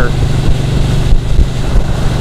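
Ducati 1299 Panigale's L-twin engine running steadily at cruising speed, mixed with wind noise on the microphone.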